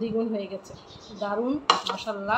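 A plastic plate knocks against a glass tabletop once, about three quarters of the way in, as a short sharp clatter. It is the loudest sound here and falls between stretches of a woman's drawn-out voice.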